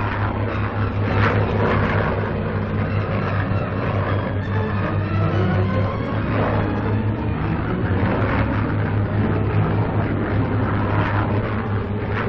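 Steady low drone of German Junkers bombers' engines, holding level without a break.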